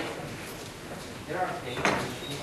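Faint, echoing speech in a large hall, with a sharp click near the end.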